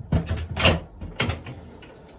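Push-button latch on a cabinet door clicking as it is pressed and released, and the door knocking open on its hinges: several sharp clicks and knocks in the first second and a half, then quiet handling. It is the first test of the newly fitted latch, which works smoothly.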